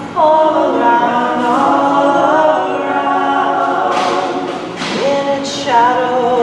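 A woman singing an original song unaccompanied, holding long notes and sliding between pitches.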